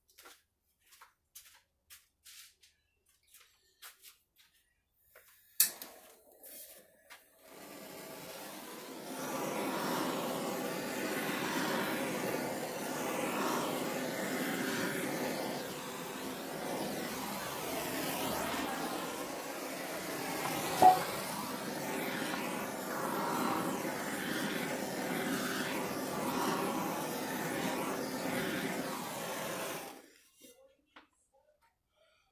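Handheld gas torch running with a steady hiss as it is played over freshly poured epoxy to pop surface bubbles. It is preceded by a few light clicks and one sharp click, and catches about seven seconds in.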